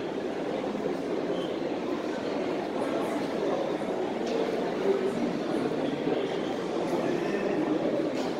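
Steady din of a busy indoor exhibition hall: a low murmur of many distant voices over even background noise, with no single sound standing out.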